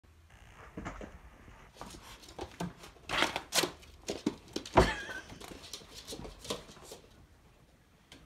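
A pet raccoon rummaging in a wardrobe among hanging jackets, making a run of rustles, scrapes and knocks. The loudest is a thump about five seconds in.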